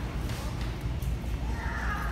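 Footsteps on a hard shop floor and handling rumble from a phone camera carried while walking, with a brief higher-pitched sound, voice-like or a squeak, near the end.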